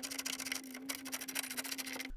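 Ratchet wrench clicking rapidly and evenly as it turns an E5 female Torx socket, backing out a headlight mounting stud, over a steady low hum.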